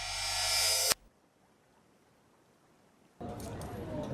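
A synthesized sound effect of many steady tones swelling in loudness, cutting off sharply about a second in. Near silence follows for about two seconds, then café room sound with light clinks of cutlery starts near the end.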